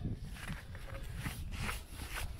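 Faint rustling and scuffing of a gloved hand and winter clothing moving against snow and the snowblower's chute, over a steady low rumble.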